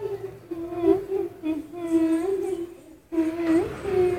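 A high voice humming a tune in long held notes that slide from one pitch to the next, breaking off briefly about three seconds in.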